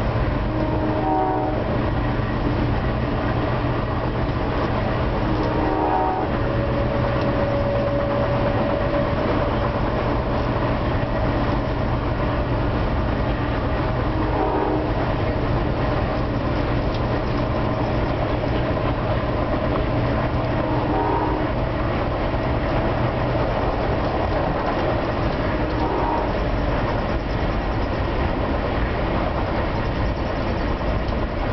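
Steady rumble and rush of an Amtrak passenger train running at speed, heard from inside the passenger car. The locomotive's horn sounds faintly from up ahead several times, with one longer blast about six seconds in.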